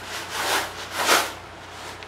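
Clear plastic bag of airsoft BBs rustling as it is handled, in two short swells about half a second apart, the second louder.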